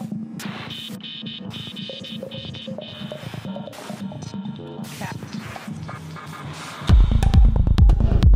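Dark progressive electronic dance track in a breakdown with no deep bass, carried by a repeating high synth line and a pulsing mid-range pattern. About seven seconds in, the kick drum and deep bassline drop back in, much louder.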